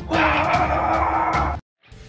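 Loud, held burst of dramatic trailer music that cuts off suddenly about one and a half seconds in. After a brief silence, quieter rock guitar music starts near the end.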